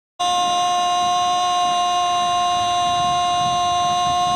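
One long, steady air-horn blast at a single unwavering pitch, held loud without a break.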